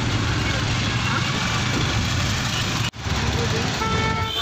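Steady road and wind noise of a moving vehicle heard from inside with the window open, a low rumble throughout. It cuts out for an instant about three seconds in, and a vehicle horn starts sounding just before the end.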